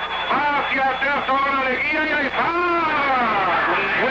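A man's fast Spanish radio football commentary running without a break, over a faint steady low hum from the old recording.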